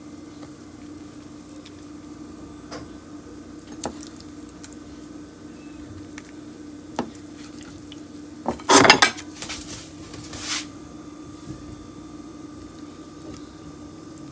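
Small clinks and taps of a utensil against dishes as cooked shrimp are served onto tortillas on a plate, with a louder clatter about nine seconds in, over a steady low background hum.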